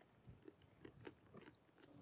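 Near silence, with a few faint soft clicks.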